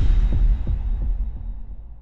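Logo-intro sound effect: a deep bass hit followed by a few low pulses, about three a second, fading away.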